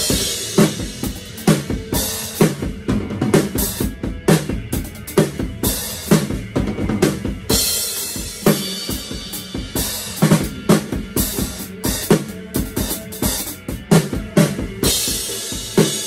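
Acoustic drum kit played with sticks: a driving beat of bass drum, snare and toms, with cymbal crashes that wash over the beat near the start, about halfway through and near the end.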